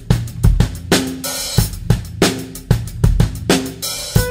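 Rock drum kit playing the opening groove of an alternative rock song: bass drum, snare, hi-hat and cymbal strikes at a steady beat, with no singing yet.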